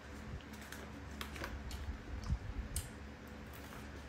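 Faint, irregular light clicks and creaks of a woven bamboo basket as a small monkey climbs about in it and grips its handle.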